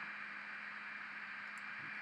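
Steady background hiss with a faint low hum underneath, the noise floor of a desk microphone; no other sound stands out.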